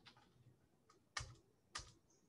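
Computer keyboard keystrokes: a couple of faint taps, then two sharp key presses about half a second apart a little over a second in, as a command is finished and entered.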